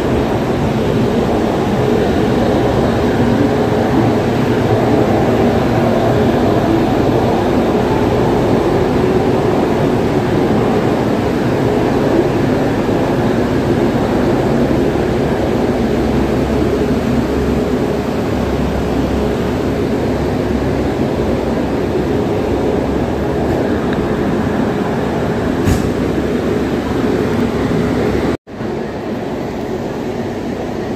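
Steady loud hum and rumble of a passenger train beside the platform, the Duranto Express's LHB coaches. The sound drops out for a split second near the end.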